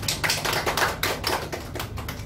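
A small group of people applauding: many quick, overlapping hand claps.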